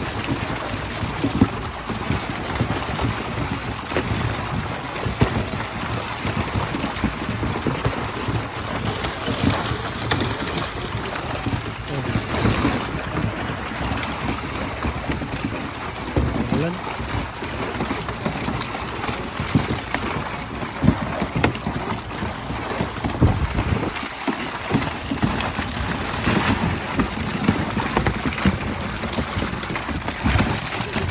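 Steady water splashing and churning as milkfish thrash in a seine net hauled through shallow pond water, with many small splashes throughout.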